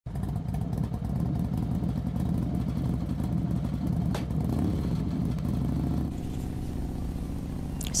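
A motor vehicle's engine running steadily at road speed, easing off about six seconds in, with a single sharp click about four seconds in.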